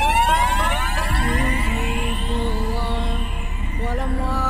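Electronic dance music transition: siren-like synth sweeps glide up in pitch and level off over a steady low bass pulse. Held synth notes come in about a second in.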